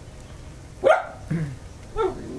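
A dog barking: one sharp, loud bark about a second in, followed by a shorter, lower one.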